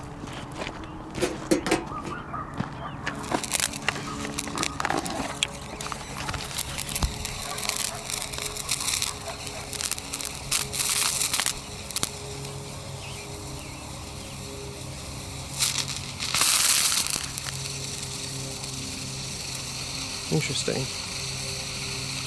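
Manganese dioxide–aluminium thermite mixture igniting and burning, with sharp crackles and sparking over the first dozen seconds. Two short hissing flare-ups come at about ten and sixteen seconds in.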